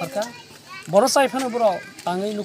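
Only speech: a man's voice talking, with a short pause about half a second in.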